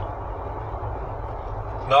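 Steady low rumble of road and engine noise inside a moving vehicle's cabin while it cruises along a paved road.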